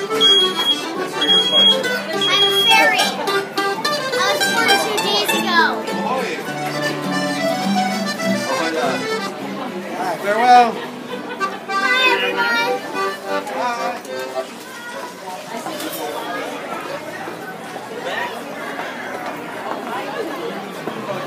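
Piano accordion playing held chords and a tune among talking and laughing voices; the playing dies away in the second half as crowd chatter takes over.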